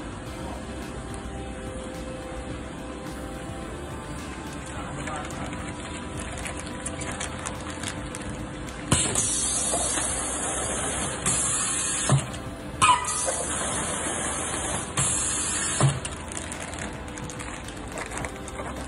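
Hot-product depositing machine filling a bag through its nozzle: a high hiss switches on about nine seconds in, breaks off twice, and stops near sixteen seconds, with a click at each start and stop. A steady machine hum sounds underneath.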